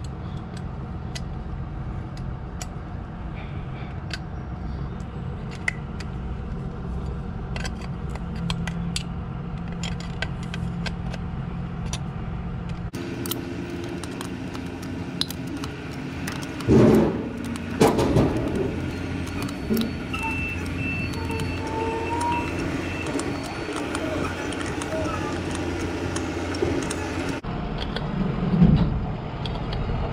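Small metal clicks and clinks of a hand tool and air-hose fittings being worked on a Hendrickson TIREMAAX PRO tire-inflation hubcap at a semi-trailer wheel end, over a steady low hum of an engine running. A few louder knocks come just past the middle.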